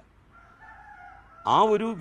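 A rooster crowing faintly, one long call, then a man's voice resumes speaking in Malayalam about one and a half seconds in.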